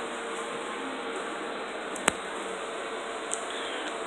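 Steady hum and hiss of room ventilation, broken by one sharp click about two seconds in and a fainter click about a second later.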